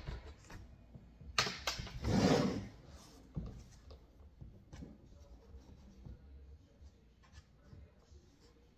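A hand tool scraping and clicking against a car tail light housing as parts are pried out of it: two sharp clicks, then a short louder scrape about two seconds in, followed by lighter ticks and rubbing.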